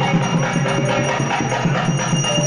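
Temple puja music: a fast, steady drumbeat of about five beats a second, with ringing bells and held pitched tones over it.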